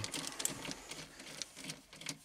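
Screwdriver backing a screw out of the dashboard beside the car stereo: a run of faint, rapid clicks.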